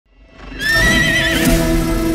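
A film logo sting: a horse's whinny over swelling, sustained cinematic music, starting about half a second in, with a hit near the end.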